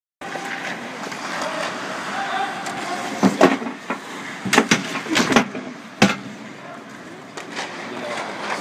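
Ice hockey practice on the rink: skate blades scraping and carving across the ice, with a run of sharp clacks of sticks and puck between about three and six seconds in.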